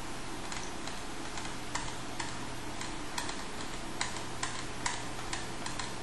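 Irregular light clicks from a computer's controls, about two to three a second, over a steady background hiss, as the trading chart on screen is scrolled forward.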